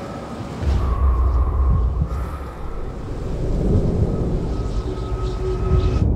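A deep rumbling drone with faint steady held tones above it, typical of a film's sound-design bed. It comes in about a second in, eases off, then builds again toward the end.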